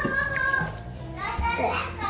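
Young children's voices chattering, with music playing underneath.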